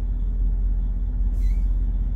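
Semi truck's diesel engine idling: a steady low rumble heard from inside the cab.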